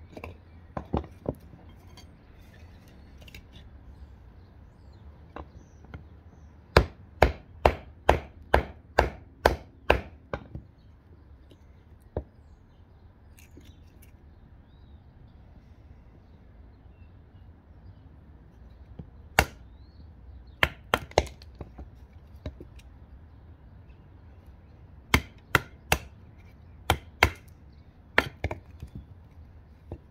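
Sharp wooden knocks of a heavy Tracker knife chopping and being batoned into a small split log piece on a wooden stump, coming in runs of strikes about two a second, with pauses between the runs.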